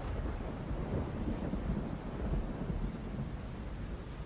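Steady low rumbling with a hiss over it, like rolling thunder and rain; no distinct strikes or tones.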